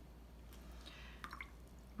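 Faint small water drips and plinks as a watercolour brush is dipped and rinsed in a water jar, a short cluster of them a little past the middle.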